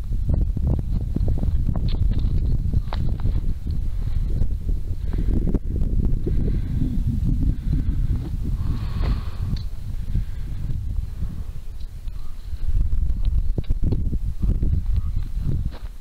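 Wind buffeting a handheld camera's microphone, with a hiker's footsteps on a dirt and gravel trail.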